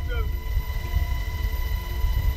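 Cabin noise of a UH-60 Black Hawk, a twin-turbine helicopter, in flight: a heavy, unsteady low rumble with steady high whining tones over it.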